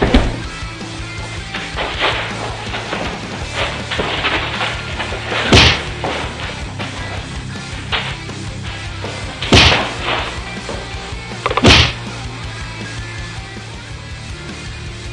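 Background music under a play fistfight, with four loud whacks of punches landing: one right at the start and three more spaced a few seconds apart.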